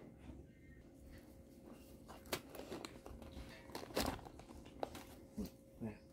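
A quiet room with a faint steady hum and a few light knocks and clicks as kitchenware is handled. The most distinct knock comes about four seconds in.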